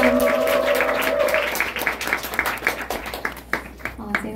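The band's last sustained chord rings out and fades within the first second and a half while the audience applauds. The clapping continues and thins out toward the end.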